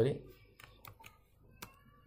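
Computer keyboard being typed on: a few separate, light key clicks spaced irregularly.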